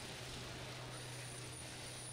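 Faint, steady background noise in the arena with a low hum under it, and no distinct sound standing out.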